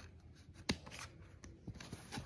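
Hands handling DVD discs and a plastic DVD case: faint rubbing and light scraping, with one sharp plastic click a little under a second in.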